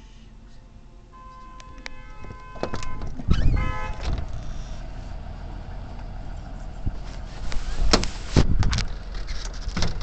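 School bus horn sounding: a held tone about a second in, then a louder blast around three and a half seconds over the bus's low engine rumble. A few knocks follow near the end.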